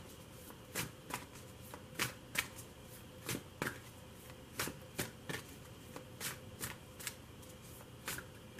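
A deck of tarot cards being shuffled by hand: soft, irregular snaps of cards, about two or three a second.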